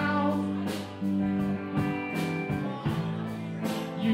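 Live band playing amplified guitars and a drum kit, mostly instrumental here, with drum strikes about once a second over sustained chords.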